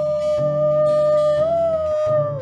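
A woman singing one long held note over acoustic guitar, the pitch lifting slightly past halfway and easing back down at the end.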